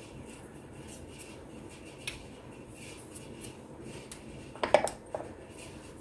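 Light clinks and knocks of kitchen utensils and containers being handled on a countertop, with a single click about two seconds in and a small cluster of clicks near the end.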